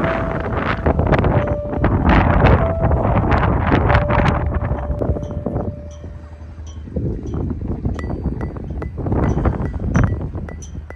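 Background music with a steady percussive beat and a held note, changing to bell-like chimes over a clicking beat about eight seconds in, with wind buffeting the microphone underneath.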